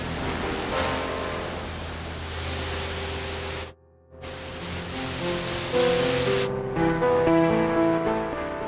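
Synth music run through the iZotope Trash Lite distortion plugin: heavily distorted, hissy notes over a sustained bass note, cutting out briefly about halfway. It comes back as a clearer melodic synth line, the noise fading out near the end, as the distortion blend is shifted.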